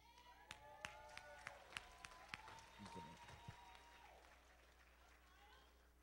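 Faint, scattered clapping from a congregation, a few claps a second, thinning out after about three and a half seconds, with faint voices calling out under it.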